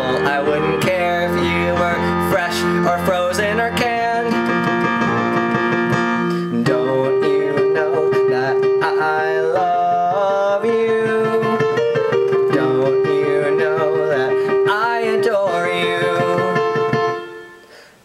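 Digital piano keyboard playing steady chords under a man's singing voice in a gentle pop song. Just before the end everything drops away briefly in a short pause.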